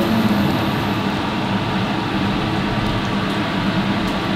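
Steady running noise of a commercial kitchen's exhaust hood fan and stove, with a low hum underneath and no distinct knocks.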